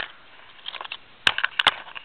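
Handling noise: a click at the start, then a quick cluster of about four sharp clicks and knocks about a second in, as the camera is repositioned and the wrapped steel bar is picked up.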